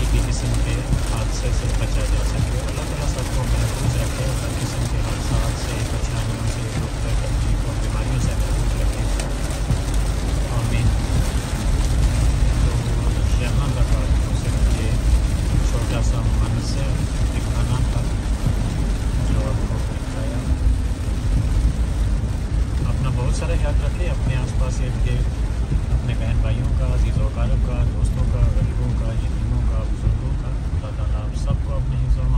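Steady rain and road noise heard from inside a car cabin while driving through a heavy downpour: rain on the roof and windshield, with tyres hissing on the flooded road.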